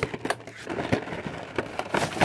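Cardboard action-figure box with its plastic blister being handled and opened: a string of irregular crackles and clicks.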